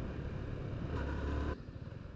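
Onboard sound of a Yamaha motorcycle being ridden: steady engine rumble and wind rush on the camera mic. It drops suddenly to a much quieter level about one and a half seconds in.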